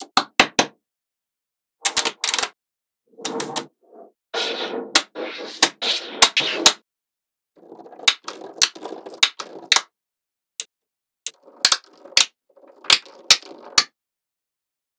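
Small magnetic balls clicking sharply as rows of balls snap onto one another, with stretches of dense rattling clicks as a slab of balls is pressed and settled into place.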